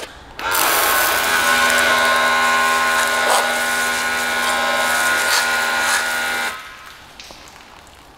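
A motor-driven sprayer runs for about six seconds, spraying into the car's fuel filler recess: a steady motor hum over the hiss of the spray. It starts about half a second in and cuts off suddenly near the end.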